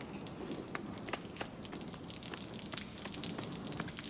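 Soft, quick footsteps on a stone floor, heard as scattered light taps and ticks over a low steady hiss of room ambience.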